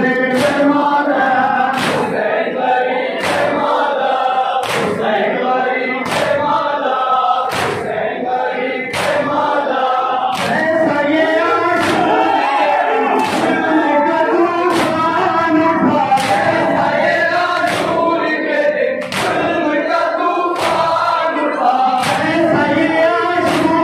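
Male voices reciting a noha, a Shia lament, sung into microphones with a crowd joining in. Under the singing the mourners beat their chests in matam, a sharp slap a little more than once a second.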